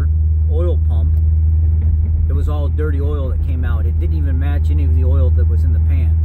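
Steady low drone of a car's engine and road noise heard inside the cabin while driving, under a man's voice talking.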